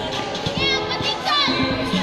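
Busy sports-hall noise: children shouting and calling out during play, with short high-pitched cries, over music in the background.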